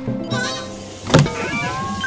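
Cartoon background music with sound effects: a single sharp thump about a second in, followed by a short gliding effect.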